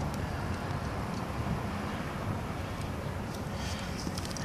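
Steady low outdoor rumble with no distinct event, with a few faint taps near the end.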